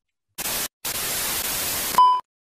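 Static hiss used as an edit transition: a short burst of white noise about half a second in, a brief break, then a longer stretch of steady static that cuts off abruptly.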